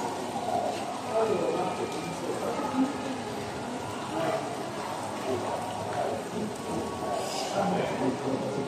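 Shopping-mall ambience: indistinct voices echoing in a large indoor hall, over a steady splashing hiss of water from an indoor fountain.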